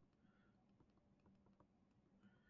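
Near silence, with a faint low hum and very faint light ticks of a stylus tapping and writing on a tablet screen.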